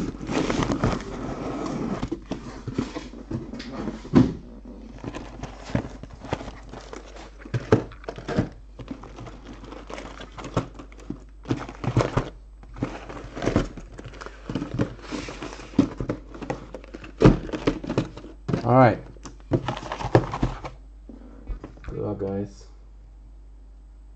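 Cardboard hobby boxes of trading cards being lifted out of a cardboard case and set down one after another: irregular knocks and thuds with cardboard scraping and rustling, busiest in the first two seconds.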